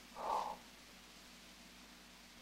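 A man's brief, choked, breathy vocal sound, not a word, lasting under half a second just after the start. Then only the faint hiss of an old transcription recording.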